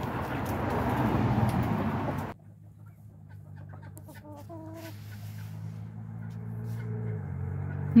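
Chickens clucking softly, with a few short pitched clucks about halfway through. For the first two seconds a loud rough rustling noise covers them and then cuts off abruptly, leaving a steady low hum underneath.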